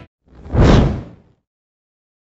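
A single whoosh sound effect for a news logo animation, swelling up over about half a second and then fading away.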